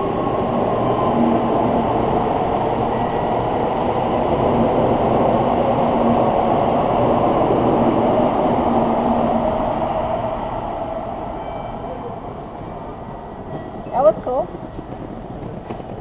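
Shinkansen bullet train pulling out of the station past the platform: a steady rushing run that builds to a peak midway and then fades away as the train leaves, dying out about twelve seconds in.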